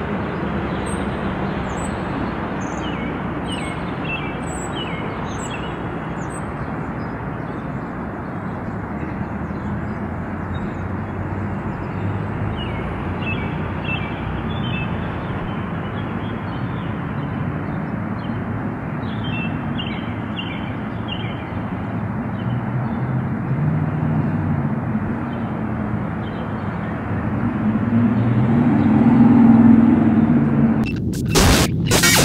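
Outdoor ambience: a steady rushing background noise with small birds chirping in short runs, mostly in the first few seconds and again midway. A low hum swells near the end.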